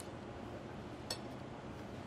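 Low steady room noise with one short, sharp click about a second in.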